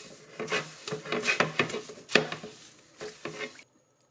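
A sponge scrubbing a ribbed non-stick aluminium grill plate in a sink of soapy water, in quick irregular strokes with light knocks of the plate against the sink. It stops suddenly near the end.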